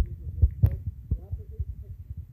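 Fingers tapping a phone's touchscreen keyboard, picked up by the phone's own microphone as a quick, uneven run of dull low thumps that grow fainter toward the end.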